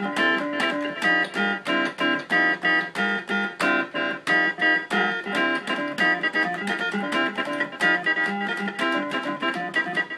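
Microtonal improvisation on a synthesizer voice played from a C-Thru AXiS-49 hexagonal keyboard, in 11-tone equal temperament. It is a fast, continuous stream of notes and chords, several attacks a second.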